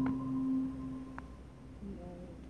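Last notes of a mallet-percussion instrument ringing on as steady pure tones and fading away, with one faint tap about a second in.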